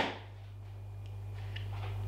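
A single sharp knock right at the start, a spice jar set down on a hard kitchen worktop, followed by a faint, steady low hum.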